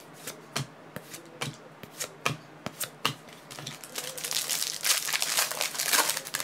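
Trading card packs being opened and the cards handled. A string of sharp clicks and flicks of card stock comes first, then a denser stretch of rustling and crinkling about four seconds in.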